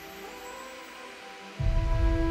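Film trailer soundtrack music playing back: soft held tones, then about a second and a half in a deep low rumble swells in under a sustained chord, much louder.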